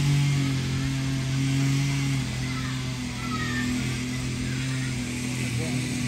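A small engine running steadily, a constant low hum that dips slightly in pitch about two seconds in.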